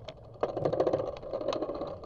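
Bicycle rattling and clicking rapidly as it rolls along a concrete sidewalk, the clatter starting about half a second in.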